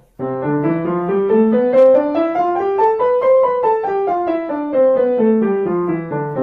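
A piano scale played at an even, quick pace, climbing for about three seconds and then running back down.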